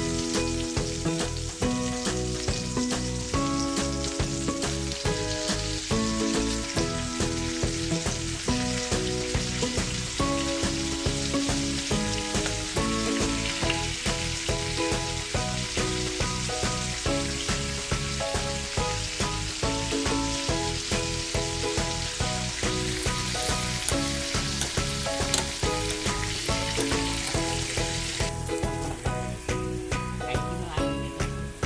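Battered ripe banana slices (pazham pori) deep-frying in hot oil in a pan, a steady sizzle that cuts off near the end. Background music with a regular beat plays throughout.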